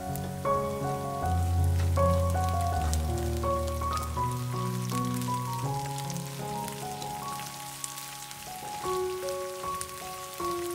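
Oil sizzling and crackling as chopped garlic, ginger, green chilies and curry leaves sauté in a frying pan, over background music of soft sustained notes with a deep bass note in the first few seconds.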